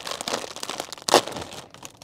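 Plastic snack bag of popcorn crinkling as it is pulled open by hand, with one louder, sharp rip about a second in as the top seal gives way easily.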